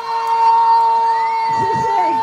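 A loud, steady high-pitched tone through the PA, held without wavering, typical of microphone feedback from a live sound system; voices come in underneath near the end.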